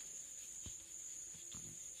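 Chalk writing on a blackboard: faint taps and scratches as letters are written. A steady high-pitched whine runs underneath.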